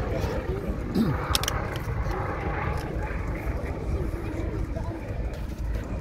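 Fokker D.XXI fighter's piston engine droning in flight at a distance, a steady low rumble, with people talking close by.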